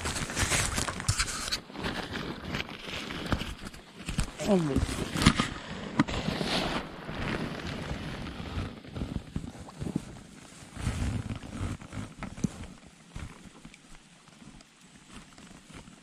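Shallow stream water splashing and sloshing up close as a hand reaches in to try to grab a gudgeon under a log, with a short falling vocal sound about four and a half seconds in. The splashing grows quieter and sparser from about ten seconds.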